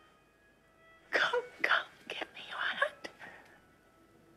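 A woman whispering a line of film dialogue, "Come, come, give me your hand," in a few short breathy phrases starting about a second in.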